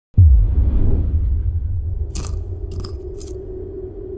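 A deep, low cinematic boom hits sharply at the start and slowly fades, over a steady low drone, with three short crackles in the second half.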